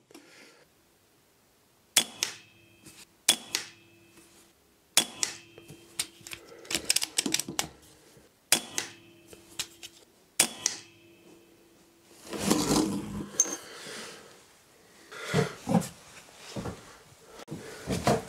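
.22 PCP air rifle being fired several times, each shot a sharp crack, some followed by a short metallic ring. Clusters of small mechanical clicks come between the shots, and a louder stretch of handling noise comes near the end.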